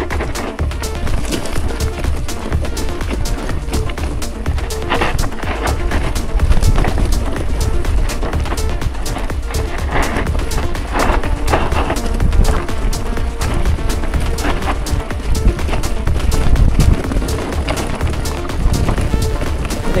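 Gravel bike rattling and clattering over loose rock on a steep descent, with many small knocks and clicks from the bike, under a steady rumble of wind buffeting the camera microphone.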